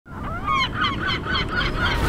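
Gulls calling in a quick series of laughing notes, about five a second, over a low rumble.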